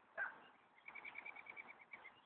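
Faint bird trill: a quick run of short notes all at one high pitch, about ten a second, starting about a second in, after a brief call a quarter second in.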